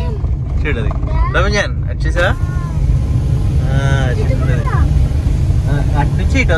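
Steady low road and engine rumble inside the cabin of a moving Maruti Suzuki Celerio hatchback, with voices speaking briefly over it several times.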